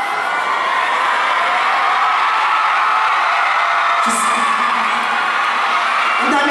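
Large concert audience cheering and screaming steadily, many high voices at once, with a short held voice about four seconds in.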